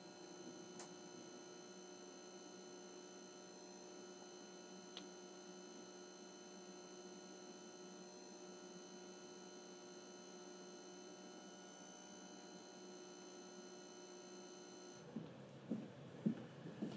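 Faint, steady electrical hum made of many even tones, like mains hum in a darkroom, with a couple of faint ticks. About a second before the end the hum cuts off and a run of footsteps on a hard floor begins.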